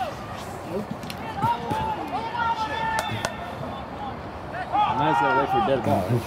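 Indistinct shouting at a rugby match, in two spells, with two sharp knocks close together about halfway through.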